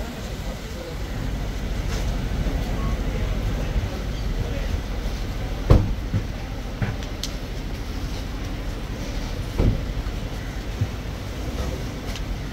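Audi Q7 SUV pulling up and running with a low steady rumble, with two sharp knocks about six and ten seconds in, among voices nearby.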